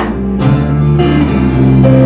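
Live band music: an acoustic guitar being strummed with an electric bass underneath, an instrumental passage between sung lines, with a steady low bass note entering about half a second in.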